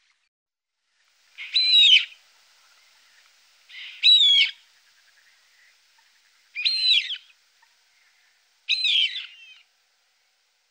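A bird calling four times at intervals of about two and a half seconds. Each call is a short, high, sweeping phrase lasting under a second.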